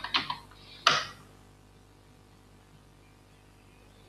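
Computer keyboard keystrokes: a few key presses in the first second, ending in one louder, sharper press about a second in as the typed command is entered. Quiet room tone follows.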